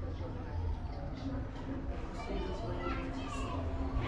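Indistinct voices of several people talking in a room, over a low steady rumble.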